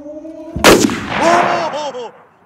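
A single very loud bang from a Yamaha RX100 two-stroke motorcycle backfiring, about half a second in, followed by startled shouts of "oh".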